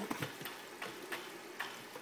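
Electric pet water fountain running: a faint trickle of water with a few light, irregular ticks.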